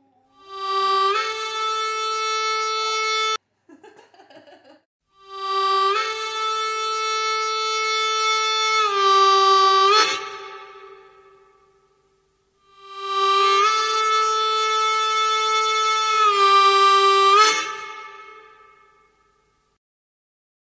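A harmonica blown by a toddler in three long held chords of several seconds each. The first cuts off suddenly; the second and third shift chord near their ends, then fade away.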